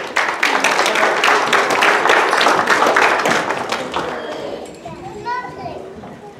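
A crowd applauding with children's voices mixed in. The clapping starts suddenly and dies away after about four seconds, leaving a child's voice near the end.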